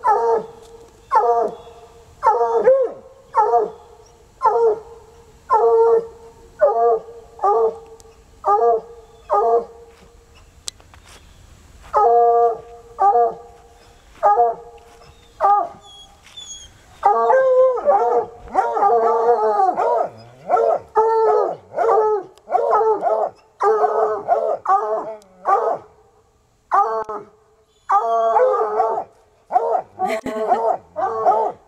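Two coonhounds baying and barking at an animal hidden up inside a car, the hound's instinct to alert to quarry. The bays come about once a second at first, then, after a short pause, grow faster and overlap in the second half.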